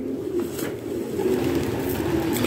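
Domestic pigeons cooing steadily, a low, continuous warbling coo.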